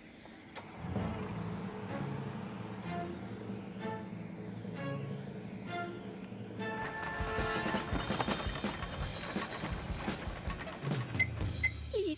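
Background music from a cartoon score: low held bass notes with short higher notes over them. About halfway through it becomes fuller and busier, with knocking beats.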